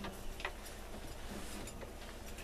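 A few light, irregularly spaced clicks over a steady low hum.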